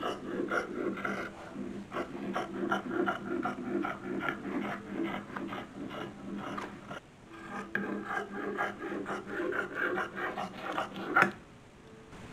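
Scissors cutting through sheer voile, a run of rapid, scratchy snips with the fabric rustling as it is lifted, pausing briefly about seven seconds in. A sharp click near the end.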